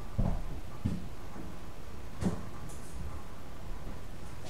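Laundry being moved by hand between the machines: a few dull thumps and rustles as wet clothes are pulled out and dropped, the first just as it begins and another about two seconds in, over a steady low room hum.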